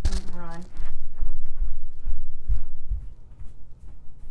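A brief bit of a woman's voice, then a couple of seconds of irregular low thuds, footsteps of someone walking away from the desk, fading out about three seconds in.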